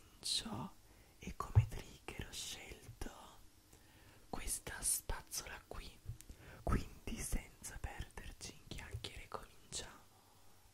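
A man whispering close to the microphone, with hissy sibilants and soft breathy syllables.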